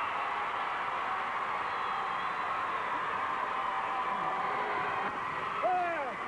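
Steady din of a large arena crowd of spectators, with a man's voice calling out near the end.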